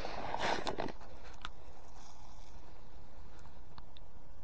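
Small fishing feeder pellets poured from a foil bag into a plastic bait tub, a brief rattle and rustle in the first second, followed by a few faint clicks as the tub is handled.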